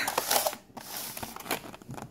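Thin clear plastic clamshell container crinkling and crackling as it is gripped and handled, in short irregular bursts.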